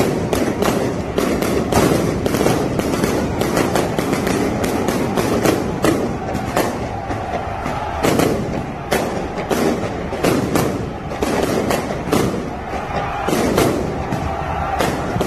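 Firecrackers going off in quick, irregular succession, several sharp bangs a second, over the continuous din of a large crowd of football supporters.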